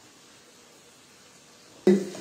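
Faint, steady sizzle of onion and garlic sautéing in butter in a frying pan. A voice starts suddenly near the end.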